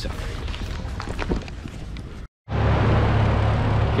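Steady rushing noise with a strong low hum, typical of a large aircraft hangar's heating and ventilation. It comes in after a sudden short dropout about two seconds in; before it there is fainter outdoor background noise.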